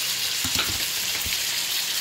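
Sliced zucchini, mushrooms and onion sizzling in olive oil in a skillet, a steady hiss, with a few soft knocks about half a second in and once more a little past a second.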